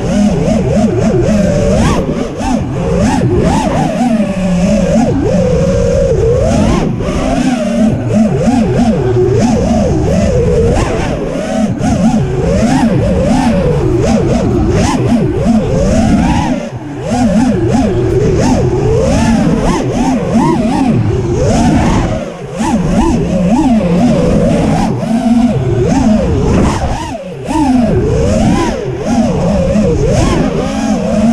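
The four 2207 2600KV brushless motors and Gemfan 5152 props of a Feather SX-220 FPV racing quad, heard from its onboard camera: a loud buzzing whine whose pitch swings up and down continually with the throttle. The sound briefly drops away three times in the second half as the throttle is cut.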